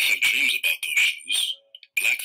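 A recorded voice reading a children's picture book aloud, played back from an online video, with a thin sound concentrated in the upper middle range.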